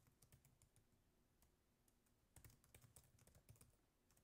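Faint typing on a computer keyboard: quick runs of keystrokes, a short run at the start and a longer run in the second half, as a chat message is typed.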